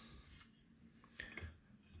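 Near silence: room tone with a faint steady hum and a couple of small, faint clicks.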